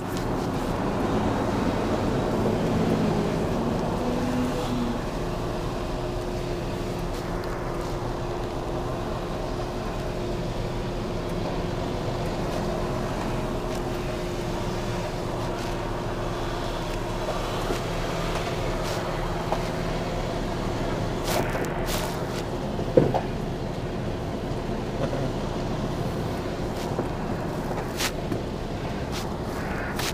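Tipper lorry's diesel engine running steadily as the truck creeps along at low speed, heard from inside the cab. A few short clicks and one knock come in the second half.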